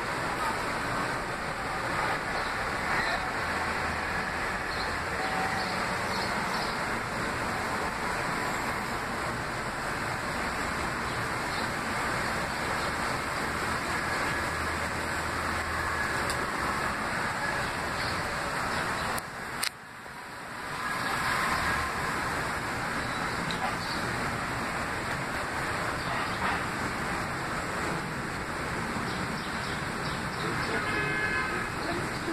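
Steady city street background noise with the hum of traffic. A low hum runs under it for much of the first half. About two-thirds of the way in there is a sharp click and a brief dip in level.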